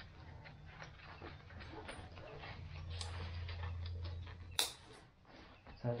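Nylon pouch and backpack webbing being handled: scattered rustles and small clicks, with one sharp click about four and a half seconds in. A low rumble runs underneath, strongest in the middle.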